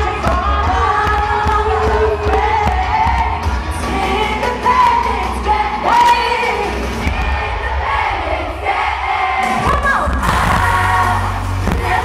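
Live pop music from the audience: a woman singing lead into a microphone over an amplified backing track with heavy bass, the crowd cheering throughout. The bass drops out briefly a little after nine seconds in, then comes back.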